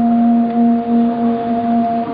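A male Qur'an reciter holding one long, steady note on a drawn-out vowel, a prolonged madd of melodic tajwid recitation.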